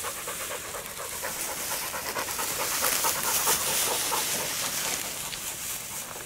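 A hunting dog panting rapidly and rhythmically, warm from a retrieve.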